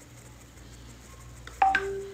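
Quiet room tone, then about one and a half seconds in a short electronic alert: two quick rising beeps followed by a lower, steady beep tone held on.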